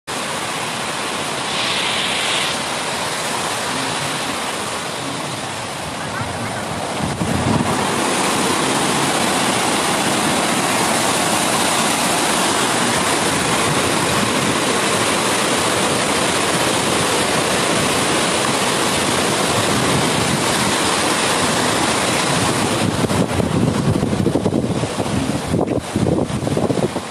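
Water rushing through the reservoir's spillway gates as a steady loud roar that gets louder about seven seconds in, with wind buffeting the microphone near the end.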